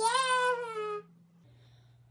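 A girl shouting a long, high-pitched "Yeah!" for about a second, then quiet room tone with a faint low hum.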